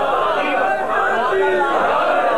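Many voices at once: a crowd of people speaking or reciting together, their voices overlapping continuously.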